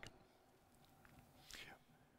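Near silence in a pause between a man's words, with one faint short breath about one and a half seconds in.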